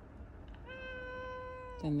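A single long call at a steady pitch, held for about a second, starting about half a second in.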